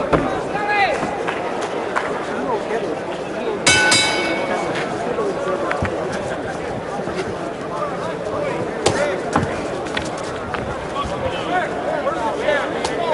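Boxing arena crowd noise with shouting voices; about four seconds in, the ring bell strikes once with a bright ringing tone that dies away, the signal that starts a round.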